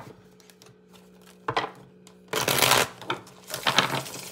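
Tarot cards being shuffled and handled: a few short rustling bursts, the longest about two and a half seconds in, over a faint steady hum.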